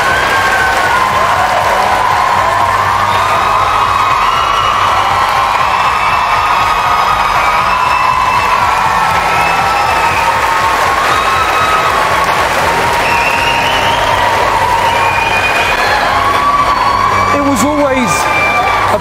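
Large studio audience cheering and applauding steadily, with loud whoops, over background music with sustained notes and a low bass.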